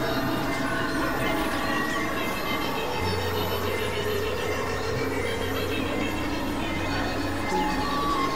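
Experimental electronic music of layered synthesizer drones and sustained tones over a noisy texture. A low hum comes in about three seconds in and drops out shortly before the end.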